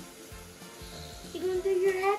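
A child singing, a held note starting about one and a half seconds in after a quiet start.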